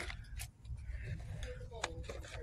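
Light plastic clicks and handling of a boxed battery-operated haunted doorbell toy as its button is pressed, one click at the start and another near the end; the toy plays nothing because it no longer works.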